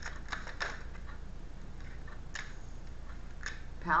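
Tarot cards being handled and shuffled in the hands: a cluster of short card clicks in the first second, then a couple of single clicks later, over a steady low hum.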